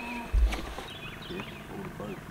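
A single dull, low thump about half a second in, followed by faint short chirps.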